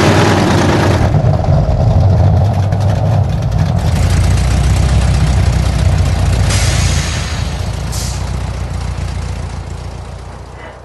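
Engine sound: a loud rev at the start, then a steady low idle that fades away near the end.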